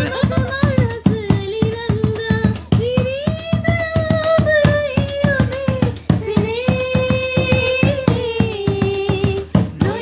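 A young woman singing long, wavering held notes over a quick, steady hand-drum beat.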